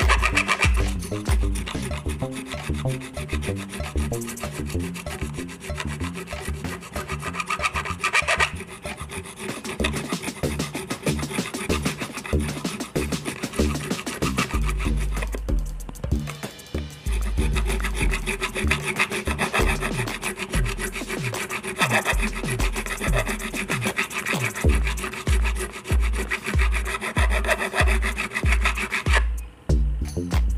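A crowning file rasps back and forth over a guitar fret, rounding the fret top that leveling left square and flat. Background music with a regular bass beat plays underneath.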